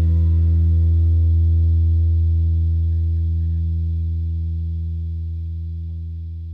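Music: the song's final chord held on electric guitar with effects and a deep low note underneath, ringing on and slowly fading.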